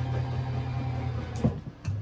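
Electric slide-out motor of a Forest River Palomino Solaire hybrid camper running with a steady hum, then clicking and stopping about one and a half seconds in: the slide-out has reached full extension.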